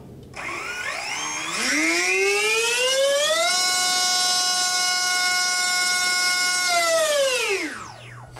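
Brushless electric motor driving a 5x4.5 three-blade racing propeller through a static thrust run. It spins up in a rising whine, holds a steady high whine for about three seconds at full throttle, then winds down and stops near the end.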